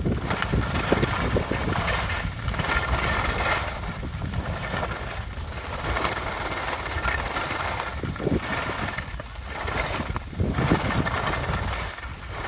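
Skis scraping and sliding over packed snow, with wind rumbling on the microphone. The noise swells and eases every second or two.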